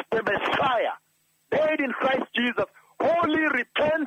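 Speech only: a man speaking in short phrases, with a pause of about half a second about a second in.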